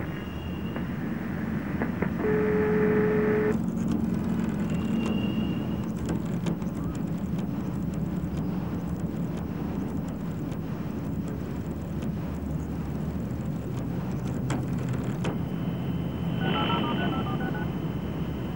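Steady street traffic noise, with a single steady telephone tone lasting about a second a couple of seconds in, and a quick run of telephone dialing beeps near the end.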